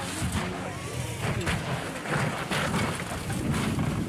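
Sound of rally-stage crash footage: a rally car on a gravel road heard through heavy wind buffeting on the microphone, in irregular gusts.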